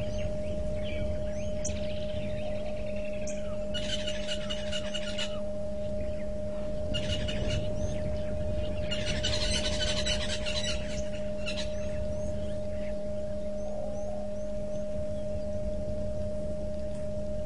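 Waterhole ambience picked up by a live camera's microphone. A steady two-note electrical hum runs under a low rumble. Short bird chirps are scattered through it, and three buzzing bursts of one to two seconds come about four, seven and nine seconds in.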